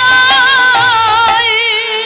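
Bengali kirtan music: a melodic line with vibrato over a held harmonium tone and khol drum strokes.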